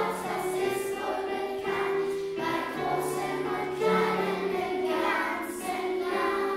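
Children's choir singing a German St. Nicholas song, with instrumental accompaniment holding long low notes underneath.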